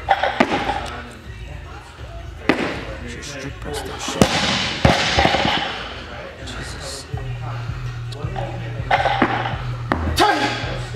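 A barbell loaded with Rogue bumper plates is dropped and set down on a rubber gym floor several times, each landing a sharp thud, with background music playing throughout.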